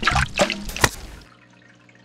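Cartoon sound effect of water splashing and dripping: several sharp splashes in the first second or so, then faint scattered drips.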